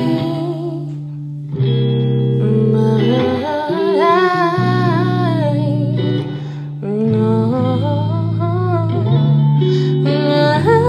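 Electric guitar R&B loop sample playing back: a lead melody with bending, wavering notes over sustained low notes. The phrase dips and starts over about a second and a half in and again near seven seconds, as the loop repeats.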